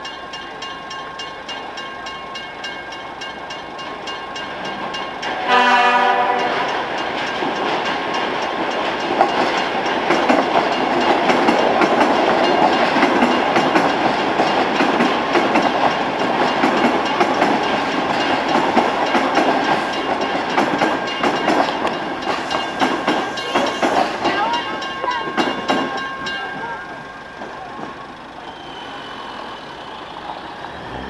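An electric commuter train sounds one short horn blast about five seconds in. It then rolls over a street level crossing for about twenty seconds, with wheels clattering over the rail joints, and the noise dies away near the end. Throughout, the crossing's warning bell rings steadily.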